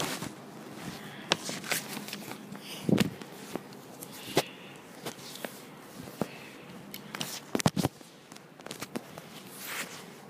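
Paperback book pages being turned and handled, with paper rustles and irregular clicks and knocks from hands and the handheld phone moving; the sharpest knock comes about three seconds in, with a quick cluster near eight seconds.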